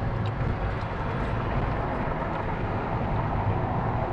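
Steady low rumble of car engine and road noise heard from inside a moving car's cabin.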